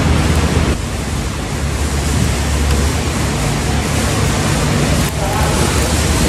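Steady rushing noise with a deep rumble: the background din of a large supermarket, picked up by a handheld phone microphone as it moves.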